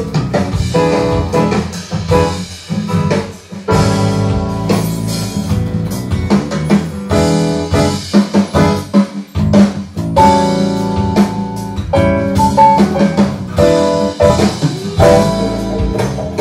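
Band music from the album sessions: drums, guitar and piano playing together at a steady groove.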